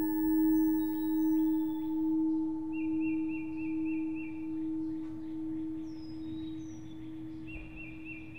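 A struck singing bowl ringing out and slowly fading, its low hum wavering in loudness a little more than once a second. Birds chirp over it, with a short trill about three seconds in and again near the end.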